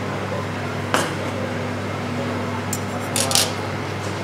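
A metal palette knife clicks once against a ceramic plate about a second in, then gives a few light clinks near the end as it is set down on a stainless-steel counter, over a steady low hum.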